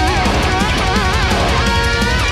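Two electric guitars playing a melodic power metal lead in harmony, with wide vibrato on the held notes, over a full band backing track with drums and bass.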